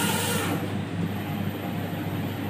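Large-format flex banner printer running, its print-head carriage moving across the banner over a steady motor hum. A hissing sweep fades about half a second in, and the hum carries on.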